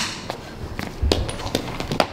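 Quick footsteps on a hard floor: about five short taps and scuffs over two seconds, with a heavier thud about a second in, from fast footwork through a throwing motion.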